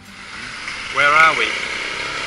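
A man's short questioning utterance, "We? Uh", about a second in, over steady outdoor street noise with a faint hum of traffic.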